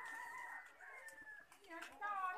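A bird's faint, long call, held for about a second and a half and falling slightly in pitch.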